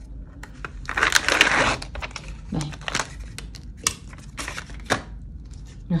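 Sterile paper-and-plastic peel pouch being pulled open by gloved hands: a rasping peel lasting under a second, then a few sharp clicks and crinkles of the packaging.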